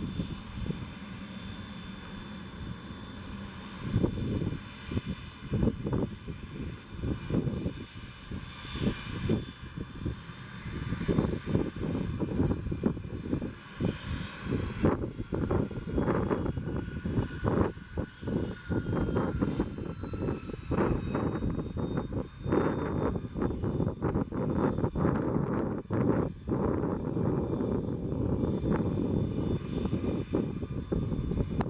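Twin Williams FJ44 turbofans of a Cessna Citation CJ3+ business jet running at low power while it taxis: a steady jet whine with several high tones that dip slightly in pitch about halfway through, under irregular low rumbles.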